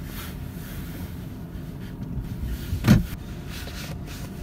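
Low, steady rumble of a car running, heard from inside the cabin, with one short knock about three seconds in.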